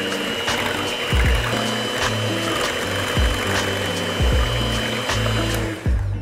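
Electric hand mixer running on low speed, its twin wire beaters whisking liquid batter ingredients in a glass bowl, with a steady high whine. The motor stops near the end.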